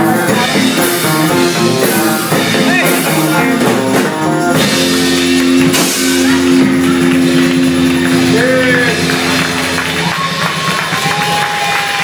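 Live rock band with electric guitar and drum kit playing the close of a funk song: cymbal crashes, then a final chord held for about five seconds that stops about ten seconds in, followed by voices.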